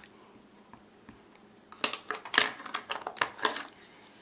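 Ink pad tapped repeatedly against a rubber stamp to ink it: a quick run of light clicking taps lasting about two seconds, starting about halfway in.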